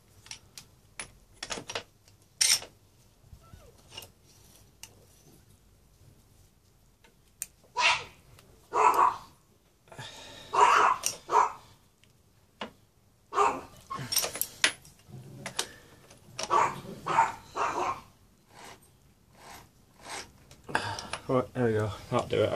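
Ratchet and socket working on the front sprocket nut of a Suzuki Bandit 600 as it is tightened: scattered metal clicks, then several louder bursts of about a second each through the middle of the stretch.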